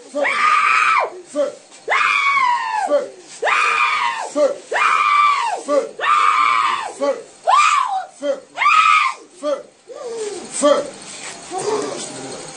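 A woman screaming in about eight long, high-pitched cries, each arching up and falling in pitch. The cries die away into quieter, lower sounds near the end. She is crying out while being prayed over for deliverance from what the pastor treats as a spirit possessing her.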